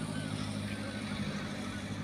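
A steady low motor hum, with a few short, faint bird chirps above it.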